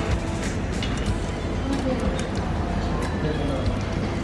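Background music over a busy eatery's ambience, with faint voices talking in the background and small scattered clicks.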